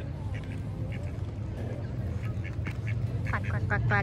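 Mallard ducks quacking in short calls, with a quick run of quacks near the end, over a steady low rumble.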